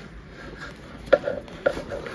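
Two light knocks from paperback and spiral-bound books being handled against each other and the table, about a second in and again half a second later, over faint rustling.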